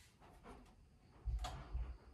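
Faint handling noise from a wall-mounted Wi-Fi router being worked by hand, with a low thud and a sharp click about one and a half seconds in.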